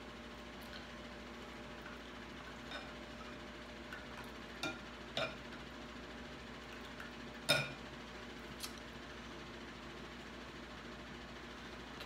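Eating sounds: a few soft, scattered smacks and clicks of chewing seafood, the loudest about seven and a half seconds in, over a faint steady room hum.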